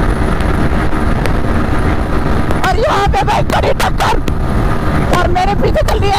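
Heavy wind rush on the microphone over a Bajaj Pulsar NS125's single-cylinder engine held at high revs, around 9,000–10,000 rpm, at full throttle near top speed.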